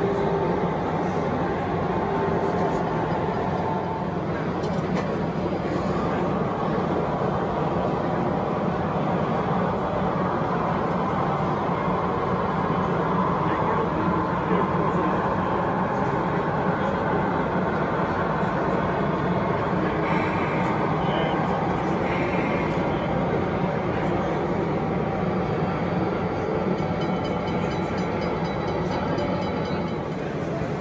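Model railway diesel shunting locomotive running steadily along the layout with a train of freight wagons.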